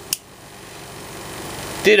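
A single sharp click as the Cold Steel Tuff Lite folding knife's blade swings open and its lockback snaps into place, followed by a steady faint hiss.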